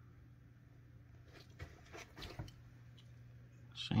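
Quiet indoor room tone: a low steady hum with a few faint clicks and rustles in the middle. A voice starts right at the end.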